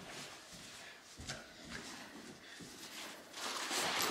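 Faint rustle of a parachute canopy's nylon fabric being dragged out across carpet, with a few soft steps, and louder handling of the harness container near the end.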